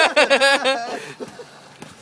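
A man laughing loudly for under a second, then a quieter stretch of water splashing as two people tussle in a swimming pool.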